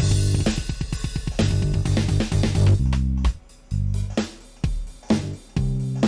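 DigiTech Trio+ band-creator pedal playing a generated backing groove of drums and bass line while its style is being switched. The groove is dense at first and turns sparser, with short gaps between hits, about halfway through, as a different style comes in.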